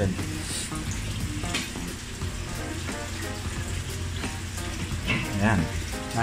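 Steady hiss of an aquarium's air-driven sponge filters bubbling, over a low hum.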